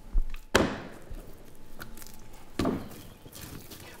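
A slab of soft clay slapped down onto a wooden workbench as it is wedged by hand: heavy, dull thuds, the loudest about half a second in and another about two and a half seconds in.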